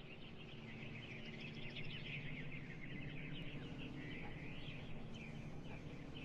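Quiet, reverberant birdsong, many quick chirps and one rising-then-falling call about four and a half seconds in, over a low steady hum. This is the ambient intro of a slowed and reverbed pop track.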